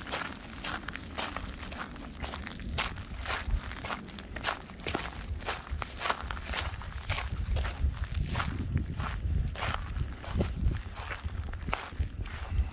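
Footsteps on dry, gravelly desert ground, walking at about two steps a second. A low wind rumble on the microphone grows stronger in the second half.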